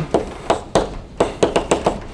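Chalk on a blackboard: a quick run of irregular taps and short scrapes as symbols are written.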